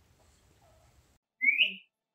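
A single short rising whistle, loud against faint room noise, about one and a half seconds in.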